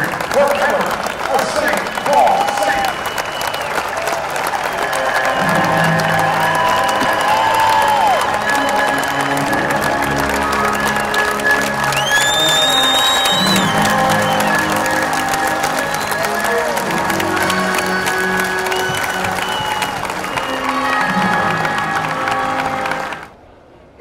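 Stadium crowd applauding and cheering while music with long held notes plays over it. A loud whistle rises and holds about twelve seconds in. The sound cuts off suddenly shortly before the end.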